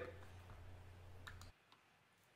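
Near silence: faint room tone with a low hum that stops about one and a half seconds in, and a couple of faint clicks.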